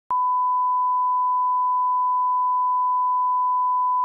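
Steady 1 kHz line-up test tone that accompanies broadcast colour bars: one unchanging pure pitch, starting with a brief click just after the start.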